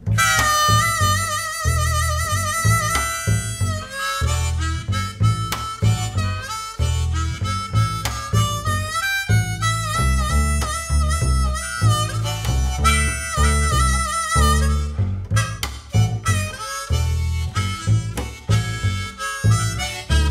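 Harmonica solo played cupped in both hands into a microphone: wavering held notes at first, shorter choppy notes near the end. An upright double bass plays steady low notes underneath.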